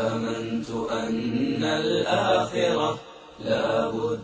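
A solo voice chanting Arabic verse in long, held melodic phrases, with a brief pause about three seconds in.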